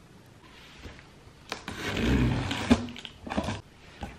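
A cardboard parcel being cut open with a small slide-blade box cutter: a loud rasping scrape of tape and cardboard lasting about two seconds, with a sharp click partway through.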